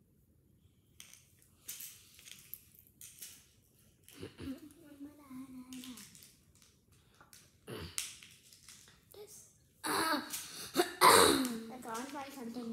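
Small clicks and rustles of handling, then a girl's voice, held on one steady pitch for about two seconds. Louder speech-like voice sounds come near the end.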